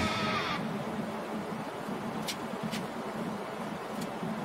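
Guitar background music ending about half a second in, then a low, steady hum of workshop noise with two short, light clicks close together in the middle.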